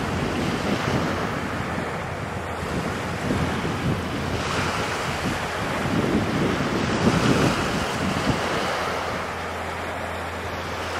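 Wind buffeting the microphone over a steady wash of water, in gusts that are strongest a little past the middle.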